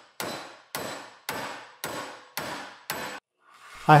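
Hammer striking a 22-gauge plain steel sheet clamped in a bench vise to bend it, six even blows about two a second, each with a short metallic ring. The blows stop a little after three seconds in.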